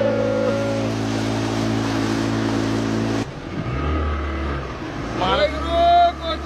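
An engine running steadily with a voice over it at first. About three seconds in, the sound cuts off abruptly to a deeper engine hum, with voices coming in near the end.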